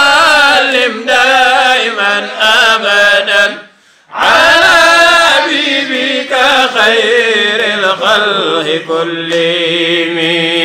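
Men chanting Arabic devotional verse in a drawn-out melodic recitation, with a brief pause about four seconds in before the chant resumes.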